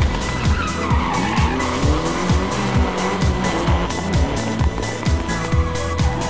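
Music with a steady beat of about two strokes a second, over a rally car's tyres screeching as it slides sideways, loudest in the first half.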